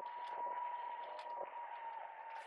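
Inline skate wheels rolling on asphalt: a steady hiss with a faint steady whine through it and a few light ticks.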